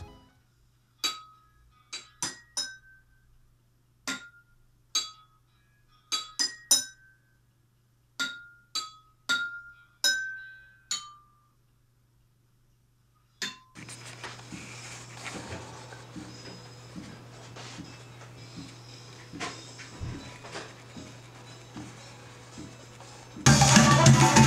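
Water-filled drinking glasses struck one at a time, about fifteen clinks in the first eleven seconds, each ringing briefly at one of a few different pitches. After a last lone clink comes a steady hiss with faint ticks, and music comes in just before the end.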